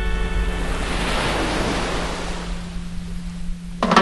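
Surf washing up a sandy beach: a rush of a small wave that swells about a second in and fades again, over a steady low 174 Hz hum. A music track fades at the start, and a new one starts abruptly just before the end.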